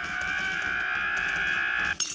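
A cartoon character's long, steady, high-pitched scream, held on one pitch and cut off suddenly at the end.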